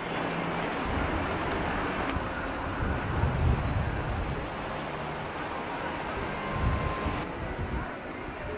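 Wind buffeting a camcorder microphone in uneven low gusts over a steady background hiss.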